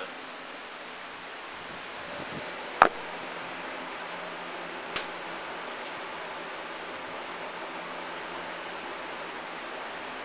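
A lighter being struck to relight a gas oven's pilot light: one sharp, loud click about three seconds in and a fainter click about two seconds later, over a steady hiss.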